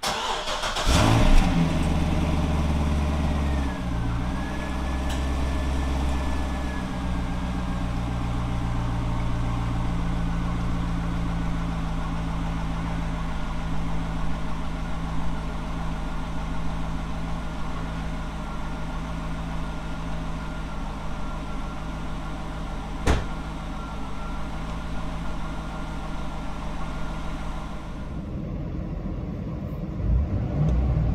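Chevrolet C6 Corvette's V8 starting and settling into a steady idle, its speed stepping down a few seconds after it catches. A single sharp click about two-thirds of the way through.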